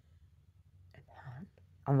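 A woman's faint breathy vocal sound, like a whisper or breath, about a second in, in a pause in her talk; she starts speaking again near the end.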